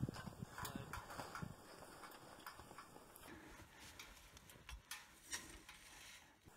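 Faint, irregular crunching and soft knocks of a person pushing through deep snow under a fallen tree with a ladder stand strapped on his back, busiest in the first second or so.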